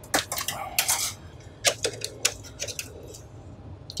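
Clicks and metallic rattles of a Mellanox 10-gigabit PCIe network card being pulled out of its riser slot in a Dell R720 server, its metal bracket knocking against the chassis. There is a cluster of clicks in the first second, another about two seconds in, and fainter ones after.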